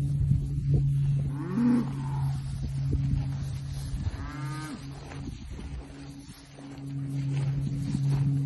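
Cattle calling: one moo about two seconds in and a higher-pitched call about four seconds in, over a steady low hum.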